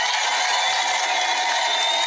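Rally crowd noise, cheering and whistling, with a long steady high tone held over it.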